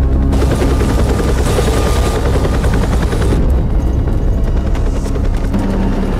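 Helicopter rotors chopping steadily as a film-soundtrack sound effect, with music underneath.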